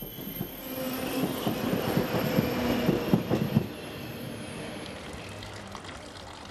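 A train running past on the rails: wheel and track noise with a quick run of clattering knocks over the first few seconds, then settling into a steadier, slightly quieter rumble.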